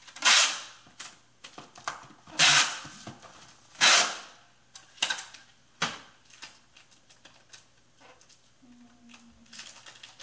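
Packing tape ripping off a handheld tape gun as it is run across a cardboard shipping box: three loud pulls in the first four seconds. A few light clicks and handling sounds follow.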